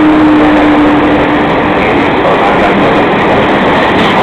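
Freight train passing close at speed: flat wagons rolling by with loud, steady wheel-on-rail noise. A steady hum from the just-passed Taurus electric locomotive drops slightly in pitch and fades out about a second and a half in.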